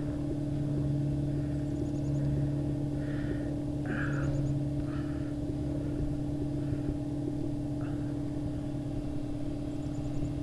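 Air compressor running steadily with a low hum while it fills its tank. A few short soft hisses come over it between about three and eight seconds in.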